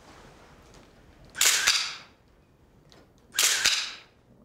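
Still cameras firing and advancing film at a posed photo opportunity: two short, sharp click-and-whirr bursts about two seconds apart.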